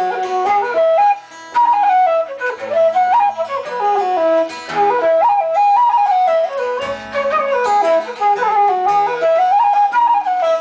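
Wooden transverse flute in E major, custom-made by William Miller, playing a quick Irish jig melody of rapid stepping notes, with acoustic guitar accompaniment underneath.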